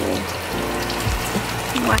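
Food sizzling in a pan on the stove, a steady crackling hiss over a low steady hum. A voice starts near the end.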